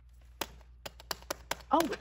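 Several sharp taps, about five of them, irregularly spaced over a second or so.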